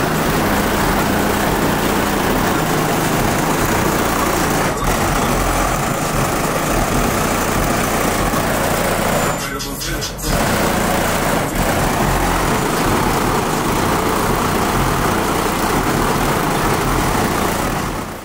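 Lincoln Town Car's trunk-mounted car audio system playing bass-heavy music very loud, the low bass 'knocking' through the car body with a heavily distorted sound. The sound dips briefly about halfway through, then carries on.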